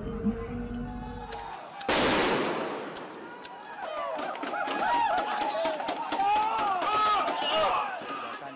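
Street clash between riot police and protesters: a sudden loud burst of noise about two seconds in, then many sharp bangs and pops. Several voices shout over them in the second half.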